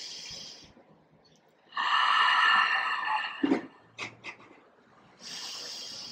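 A woman taking slow, deep breaths: one fading out at the start, a louder one about two seconds in lasting over a second, and another beginning near the end.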